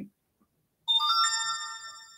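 A short electronic notification chime, like a phone or computer alert: a few quick bell-like notes climbing in pitch that ring on and fade out.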